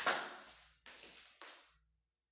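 Rustling and scraping handling noise close to the microphone, in three bursts: the first and loudest comes at the very start, then two softer ones about a second and a second and a half in, each dying away quickly.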